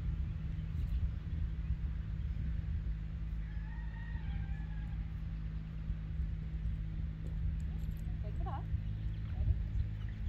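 Steady low rumble of wind and background noise, with a rooster crowing faintly once near the middle and a short higher call near the end.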